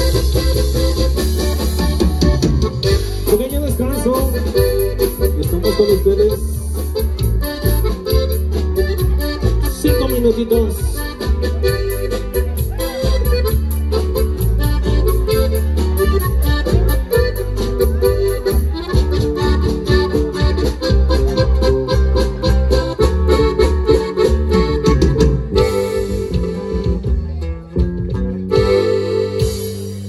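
A live norteño band playing dance music through a large PA: accordion over bass and drums with a steady beat. Near the end the music thins out and dips briefly.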